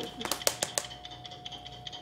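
A quick run of five or six sharp taps or knocks in the first second, then a faint steady hum-like tone carrying on.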